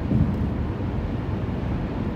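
Steady low road and engine rumble inside a car's cabin while driving at highway speed.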